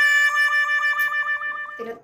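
Electronic synth sound effect: a held note pulsing about seven times a second, which cuts off sharply near the end.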